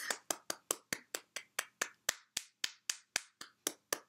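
One person clapping their hands: a steady run of quick, sharp claps, about four a second.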